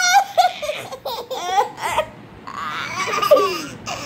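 A baby and a woman laughing together in short repeated bursts.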